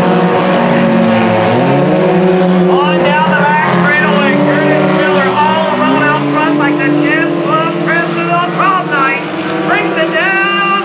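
Several sport compact race cars' small four-cylinder engines running hard around a dirt oval, their pitch climbing and dropping again and again as the drivers accelerate down the straights and lift for the turns.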